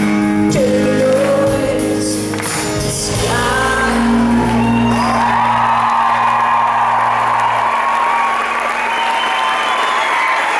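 Live pop-rock band ending a song: a male voice sings over acoustic guitar, bass and drums for about three seconds. Then the final chord rings out under audience cheering and applause, the last low note stopping near the end.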